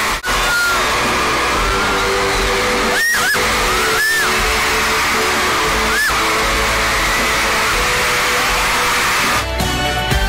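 Amplified live pop music in an arena, recorded from the crowd, under a dense wash of crowd noise. The sound briefly drops out a few times, and changes near the end.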